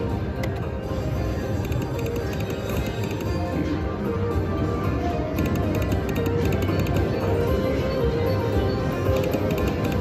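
Electronic slot machine music playing through a free-spin bonus round, steady and continuous, with faint repeated ticks over it.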